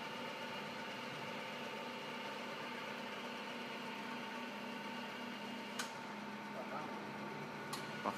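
Rosa vertical milling machine running with a steady electric hum and whine while its motorized head rises. About six seconds in a short click sounds and a high whine drops out, and another click comes near the end.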